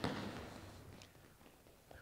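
A single thump at the very start, echoing briefly through a large sports hall, then a few faint footfalls of players running on the court, fading away.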